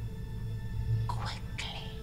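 Low, steady drone of a dramatic music score, with a short hissing, whispery voice about a second in.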